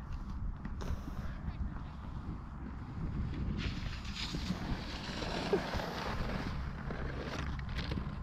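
Wind rumbling on the microphone, with the hiss of a snowskate sliding over packed snow swelling in the middle.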